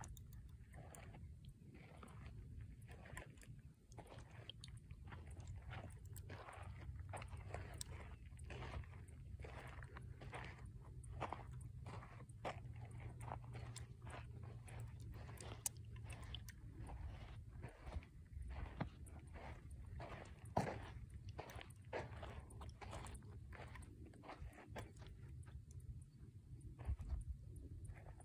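Faint, irregular crunching and clicking, several a second, like footsteps and brush on a dry, sandy trail, over a low steady rumble of wind on the microphone.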